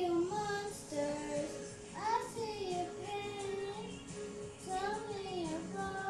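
A child singing a slow song in long held notes along with a karaoke backing track.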